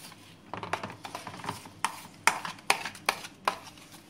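A spoon stirring and scraping half-frozen, thickening ice cream mix in a plastic container. It gives a soft scraping, then sharp clicks of the spoon against the container, about every 0.4 s in the second half.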